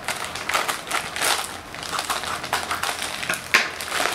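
Scissors cutting through a plastic courier mailer, the plastic crinkling and crackling in quick irregular snaps as the bag is pulled open, with one sharp, louder crack about three and a half seconds in.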